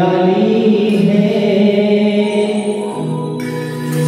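A male voice sings a Hindi devotional bhajan in long held notes that glide slowly in pitch, with electronic keyboard accompaniment.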